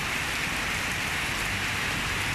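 Steady rain falling: an even, unbroken hiss with nothing else on top of it.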